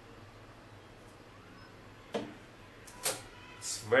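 A low, steady hum from the running GBC H220 laminator, slowed for toner transfer. Two sharp clicks come about two and three seconds in as the hot copper board is handled at the rollers.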